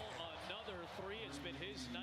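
Faint basketball game broadcast audio: a commentator's voice with low arena background noise and a few short sharp sounds from the court.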